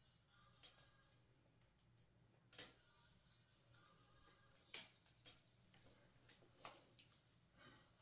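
Near silence broken by a few faint, sharp clicks and taps of small plastic parts being handled: wireless earbuds being fitted.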